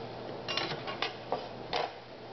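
A steel Chinese cleaver handled and laid down on a plastic cutting board: a few light, separate clicks and clacks of metal on plastic.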